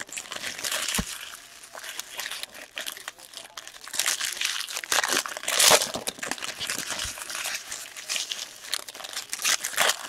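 Foil trading-card pack wrappers crinkling and tearing as packs are opened by hand, with irregular louder rustling bursts, strongest around four to six seconds in.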